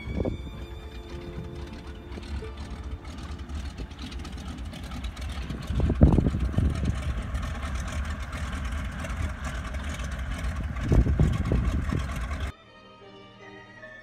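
Engine of a floatplane with a radial engine, running steadily as it taxis on the water, with wind buffeting the microphone in two heavy gusts about six and eleven seconds in. Quiet music takes over suddenly near the end.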